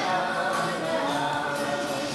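Voices singing long held notes to an acoustic guitar accompaniment, easing off near the end.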